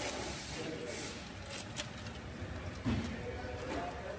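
A few sharp clicks of plastic being handled, as the air-filter box on a Suzuki's engine is opened, over a low steady hiss.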